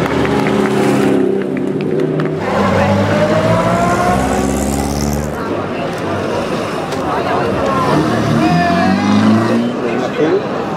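Engines of pre-war vintage sports cars running at low speed as they pass one after another, one rising in pitch a few seconds in as it speeds up. Spectators' voices are mixed in.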